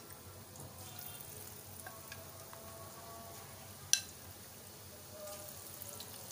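Batter-coated chicken pieces deep-frying in hot oil, a soft, steady sizzle. One sharp click sounds about four seconds in.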